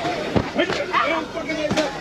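Inflatable vinyl balloon bats striking each other, two sharp hits a little over a second apart, over children's voices.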